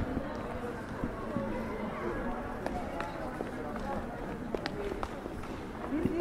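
Street ambience of passers-by: indistinct voices in conversation, scattered footsteps on stone paving, and a steady low city background noise.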